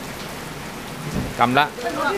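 Steady rain falling, an even hiss, with a voice starting about one and a half seconds in.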